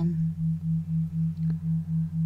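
Synthesized tone drone of the brainwave-entrainment kind: a steady low sine hum under a slightly higher tone that pulses on and off evenly, about four to five times a second.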